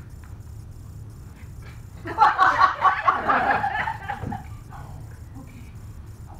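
Audience laughter, breaking out about two seconds in and dying away about two seconds later, over a steady low hum.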